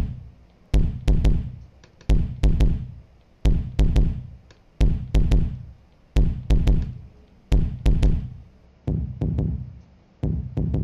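Kick drum track playing alone on a loop through a compressor and channel EQ. Deep kicks with a sharp click come in groups of two or three, the group repeating about every 1.4 seconds.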